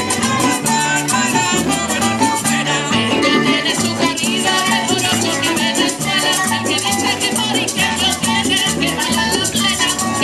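Live Puerto Rican folk band playing an upbeat dance tune: plucked and strummed guitars and conga drums, with a steady rattling hand percussion keeping the beat.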